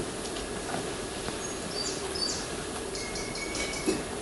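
Steady background hiss of a stage recording, with a few faint, short, high chirps in the middle and a thin faint tone near the end.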